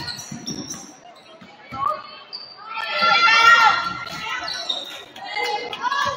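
Basketball being dribbled on a hardwood gym floor, a series of short thumps, with voices from the crowd and players in the hall, loudest about three seconds in.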